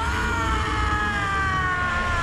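A long, held tone with overtones in a trailer's sound design. It swells up at the start, then slides slowly and steadily down in pitch, wail-like, over a continuous deep low rumble.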